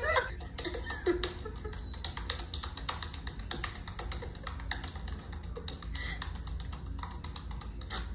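A rapid, uneven run of sharp clicks or taps, several a second, over a low steady hum.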